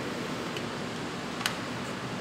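Steady background hiss with one sharp click about one and a half seconds in and a fainter one about half a second in, from a compact prop gun being handled as it is passed from hand to hand.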